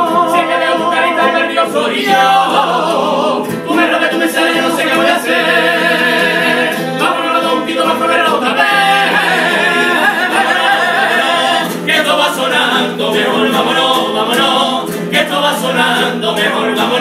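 Men's carnival quartet singing together in harmony with long held notes, to a Spanish guitar.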